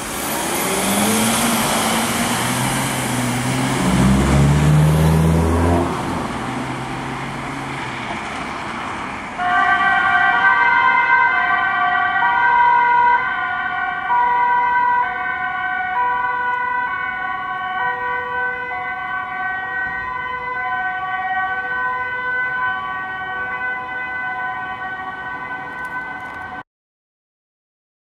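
Ambulance pulling away close by, its engine and tyres loud for the first several seconds. About nine seconds in, its two-tone siren comes on, alternating between a low and a high tone about once a second as it drives away.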